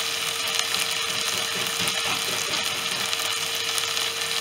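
Curry masala frying in a pan, sizzling with a steady hiss.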